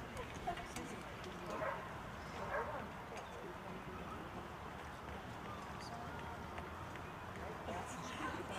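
A lull with no music playing: faint, scattered murmuring voices and a few small clicks, with the loudest click about half a second in.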